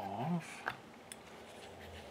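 A brief murmured voice sound, then a single light metallic click as the cast end housing of a small electric fan motor comes free of the stator and is lifted off.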